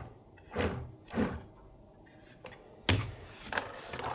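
A cardboard-sided filament spool being lifted out of a plastic filament-dryer chamber: a few light knocks and scrapes, with the sharpest knock about three seconds in.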